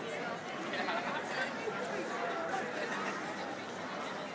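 A marching crowd of protesters chattering, many voices talking over one another at once.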